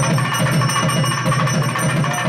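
Festival music with drums playing a fast, steady beat.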